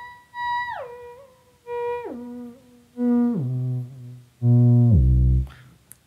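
Theremin playing pure, sustained notes joined by smooth slides of an octave: a note rises an octave and falls back, then the pitch steps down octave by octave, each held briefly, ending on a deep, loudest low note near the end. These are octave checks across hand positions, used to measure and tune the instrument's range.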